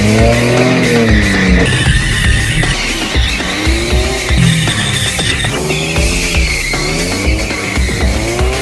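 A Ford Sierra estate with a welded differential drifting: its engine revs rise and fall over and over while the tyres squeal steadily through the slides. Music with a steady beat plays underneath.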